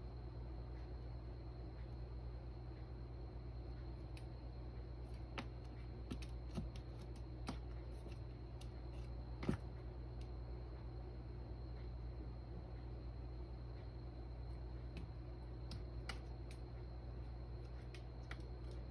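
Scattered light clicks and taps from a kitten's paws and claws on a tile floor and a plastic litter box as it pounces after a laser dot, with one sharper knock about nine and a half seconds in. A steady low hum runs underneath.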